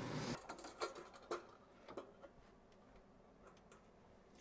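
A steady hiss cuts off abruptly a third of a second in, then faint scattered clicks and light metallic taps as stainless steel colanders and bowls are handled in a cabinet.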